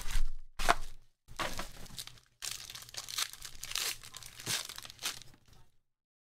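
Foil wrapper of a trading-card pack being torn open and crinkled by hand, in several bursts of rustling with short pauses between them.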